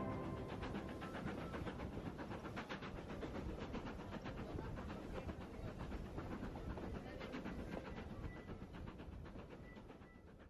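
Passenger train running along the track, heard from inside the carriage: a steady low rumble with rapid, closely spaced clicking from the wheels and rails. It fades gradually near the end.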